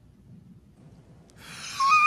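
A faint low hum, then near the end a man's drawn-out, breathy exclamation of dismay, rising and then falling in pitch, at the guest's video-call connection dropping.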